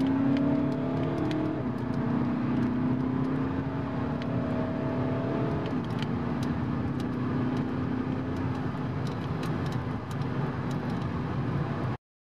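Volkswagen Passat B8 2.0 TDI biturbo four-cylinder diesel heard from inside the cabin under hard acceleration from about 80 to 140 km/h, over tyre and road noise. The engine note steps down briefly at two gear changes, about a second and a half in and about six seconds in.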